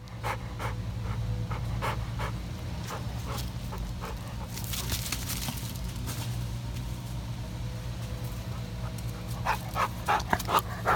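Eight-year-old black Lab mix panting hard right at the microphone, about three breaths a second, winded from a long bout of ball fetching. It turns into a few louder, sharper sounds near the end.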